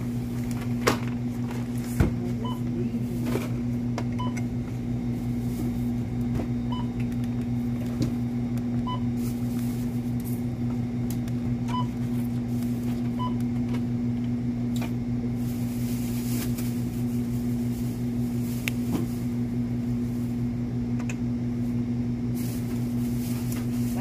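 A steady low electrical hum throughout, with about six short, faint beeps from a checkout barcode scanner as items are rung up, and scattered light clicks and rustles.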